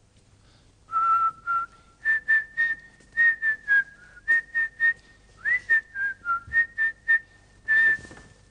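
A person whistling a short tune in quick, clipped notes, mostly repeating one high note with a few lower ones.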